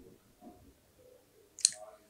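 A short pause in a man's speech, holding faint mouth clicks and, near the end, a brief sharp click or breath as he gets ready to speak again.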